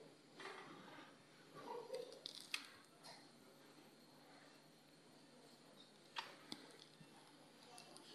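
Near silence in an operating room: a faint steady low hum, with a few soft clicks and taps about two seconds in and again about six seconds in.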